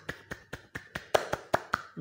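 Quick, light hand claps, about six a second and a little uneven.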